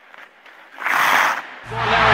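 Hockey arena crowd noise that swells into a loud burst about a second in and drops away, then music with a heavy bass comes in near the end.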